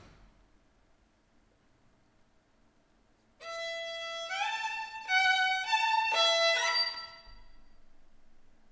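Solo violin, bowed: after a few seconds of quiet, a short phrase of held notes that step upward and grow louder, ending about seven seconds in.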